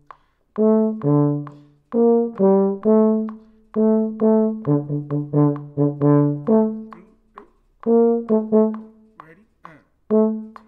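Euphoniums playing a rhythmic passage of short, separate notes in a low-middle register, at times in two parts together, with brief breaks between phrases.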